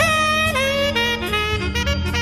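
Tenor saxophone played live in a jazz organ trio: a note scooped up into pitch and held for about half a second, then a step down and a run of shorter notes. Organ bass and drums play underneath.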